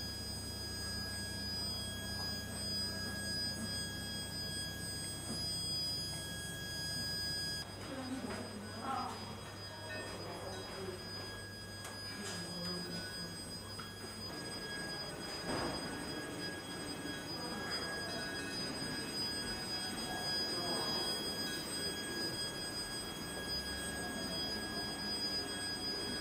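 Several steady, high-pitched electronic tones over a low hum, with faint, indistinct voices now and then; the hum changes about eight seconds in.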